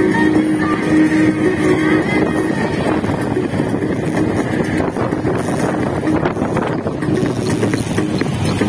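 Motorcycle riding slowly through heavy traffic: engine and road noise, with guitar music in the background that is clearest in the first few seconds and fades under the noise after that.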